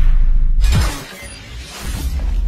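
Music and sound effects of an animated TV-channel logo intro: loud from the start, with a sudden hit and a falling sweep about half a second in, then a brief lull before it swells again at the end.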